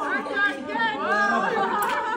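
Several people talking at once: a chatter of overlapping voices.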